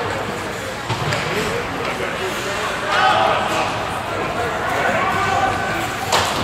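Ice hockey game sounds in an indoor rink: sharp clacks of sticks and puck over the hum of the arena, with players and spectators shouting, loudest about halfway through.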